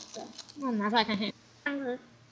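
A girl's voice in two short utterances, the recogniser catching no words in them.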